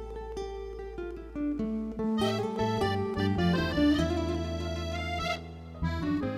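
Live band's instrumental break between sung verses: acoustic guitar over a steady low bass, with a brighter melody line coming in about two seconds in.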